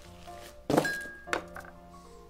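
A cloth pouch thrown down onto a wooden card table lands with a heavy thunk about a third of the way in, then a smaller knock follows just over half a second later. Film-score music plays underneath.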